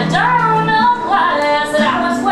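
A song: a woman singing a gliding melody over a steady instrumental backing.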